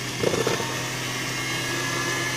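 Electric hand mixer running steadily on its lowest speed, its twin beaters working whipped egg whites into cake batter, with a brief louder patch about a quarter of a second in.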